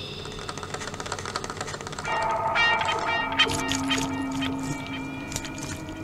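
Eerie electronic horror-animation soundtrack: a fast, dense clicking for the first two seconds, then held synth tones begin, with sharp irregular clicks over them.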